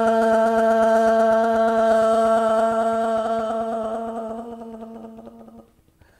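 A woman's voice intoning a long open 'Aah' on one steady pitch, a yoga vocal-toning exercise, while she taps her chest with loose fists so the tone flutters slightly. The tone fades gradually and stops about a second before the end.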